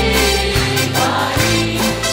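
Live worship band playing a Burmese-language praise song: a male lead singer with female and male backing voices, over strummed acoustic and electric guitars and held low bass notes.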